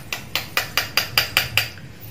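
Metal spoon clicking against a small wire strainer, light quick taps at about six a second while straining guava juice.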